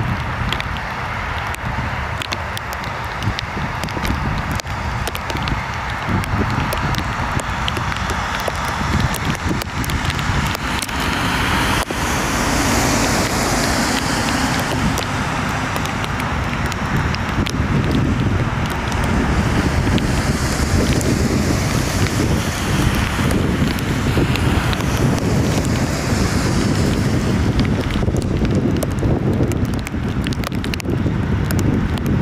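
Boeing 747's four jet engines running as the airliner lands and rolls out on a wet runway, with heavy wind buffeting on the microphone. The engine noise grows louder about halfway through.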